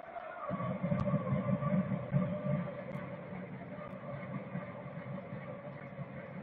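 Stadium ambience: a low rumble of crowd noise under a steady hum, louder in the first couple of seconds.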